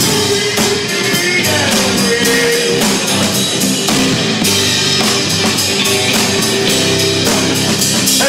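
A live folk-rock band playing: electric guitars and bass over a drum kit with cymbals, continuous and loud.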